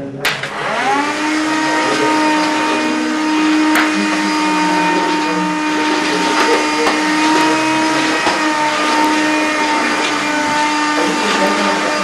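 An electric appliance motor is switched on. Its whine rises in pitch over about a second, then it runs steadily and loudly.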